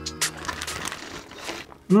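A plastic bag crinkling and rustling in irregular bursts as pieces of raw pork are handled into it. Background music fades out early on.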